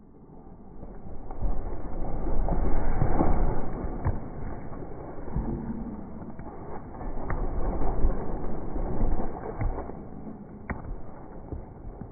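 Trampoline springs creaking and the mat bouncing under someone jumping on it, with rustling from the handheld phone being jostled. A few short squeaks stand out.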